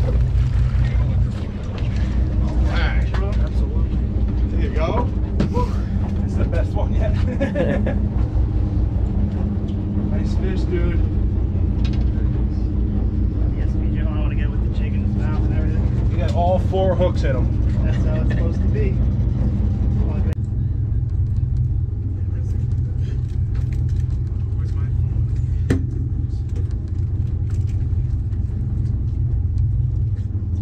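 Boat engine running with a steady low rumble under indistinct voices of people on deck. About twenty seconds in the sound changes abruptly: the voices drop away and a steady hum sits over the rumble.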